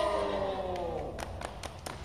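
A group of children letting out a long "ooh" that rises and falls in pitch and dies away about a second in. Scattered hand clapping from several people follows.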